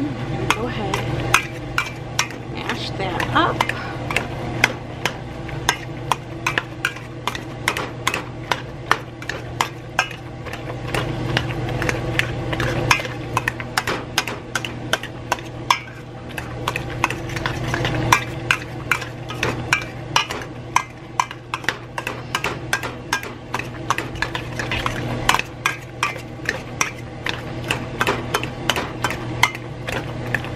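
Wire potato masher mashing boiled broccoli and cauliflower with butter in a stainless steel pot: frequent sharp clicks of the masher striking the pot, a few a second, over a steady low hum.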